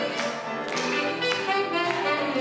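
Saxophone playing a melody over grand piano accompaniment, with piano notes struck about every half second.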